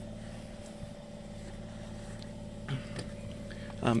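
Steady low mechanical hum with a few fixed tones, with a couple of faint ticks about three-quarters of the way through.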